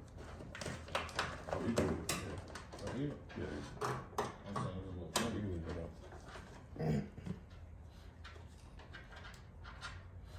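Low talk, with scattered short clicks and rattles of a car door latch assembly and its cables being handled and fitted inside the open door.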